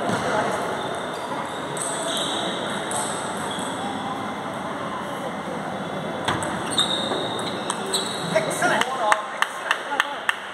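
Table tennis ball clicking off bats and table in a rally during the second half, over steady background chatter of voices in the hall. Near the end, evenly spaced claps, about two a second, start as the point ends.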